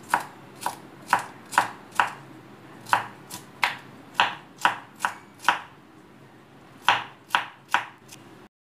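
Knife chopping cucumber sticks into small cubes on a wooden cutting board: sharp knocks about two a second, with a pause of about a second and a half after five seconds.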